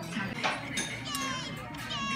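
Background voices talking, with a young child's high-pitched voice calling out in the second half, and a single sharp clink about half a second in.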